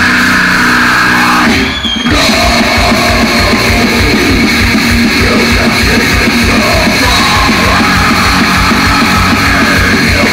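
Thrash metal band playing live and loud: distorted electric guitars, bass and drum kit. The band stops for a moment about one and a half seconds in, then comes back in with fast drumming under the guitars.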